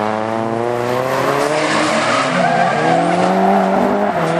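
Drift car's engine held at high revs while its rear tyres squeal and skid as the car slides sideways through a corner. Partway through, the revs dip and then climb again as the throttle is worked.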